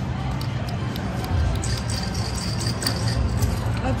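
Casino floor background: a steady low hum with faint music and distant chatter, and a few light clicks. A thin high tone rings from about a second and a half in to about three seconds.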